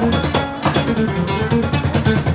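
Live guitar music: a nylon-string guitar and an archtop guitar playing quick plucked lines together, with sharp hand-drum strikes from a cajón.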